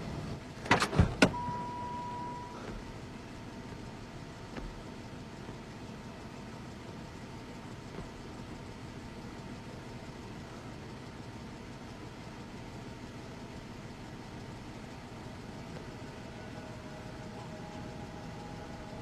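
Three sharp bangs in quick succession, followed by a brief steady high tone, then a low, even ambient hum from a film soundtrack.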